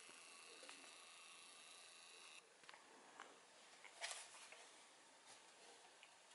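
Near silence: faint room tone with a few faint clicks and one brief soft rustle about four seconds in.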